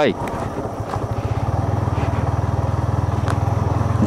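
Yamaha MT-15's single-cylinder engine running steadily under way, a low drone with a rapid even firing pulse.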